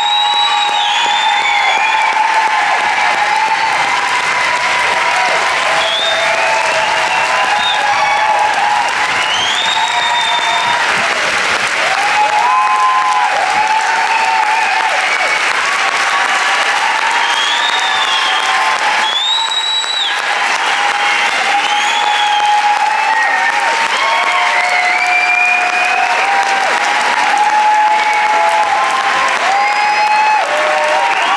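Large concert audience applauding steadily and cheering, with shouts and whistles rising over the clapping.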